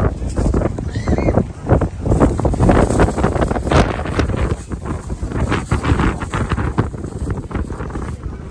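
Wind buffeting the phone's microphone in loud, uneven gusts, heaviest in the low end.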